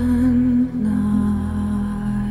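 Music: a female voice humming a slow melody without words over a steady low drone, holding one note and then stepping down to a lower held note a little under a second in.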